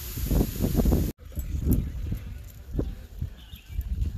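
Steady hiss of a cliff waterfall mixed with wind buffeting the phone's microphone. About a second in it cuts off abruptly, leaving quieter wind rumble and a few soft thumps.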